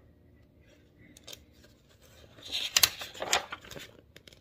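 A paperback picture book's page turned by hand: quiet at first, then paper rustling and crinkling for about a second and a half from around two and a half seconds in.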